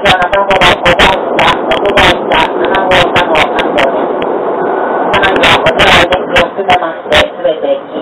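A voice making an announcement over a train carriage's public-address speaker, loud and distorted, with the train's running rumble underneath.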